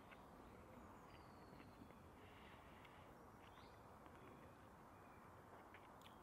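Near silence: faint outdoor woodland ambience with a few faint, distant bird chirps.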